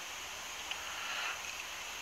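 Faint, even background hiss with no distinct events: the open ambience of a racetrack broadcast feed, with no clear hoofbeats, gate clang or crowd sound standing out.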